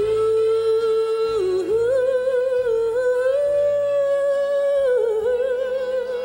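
A woman singing a wordless melody through a microphone and PA: long held notes with vibrato, stepping up about two seconds in and falling back near the end, over soft backing music.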